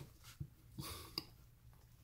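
Faint, light ticks and soft rustling of hands rolling an egg roll wrapper tight on a wooden cutting board.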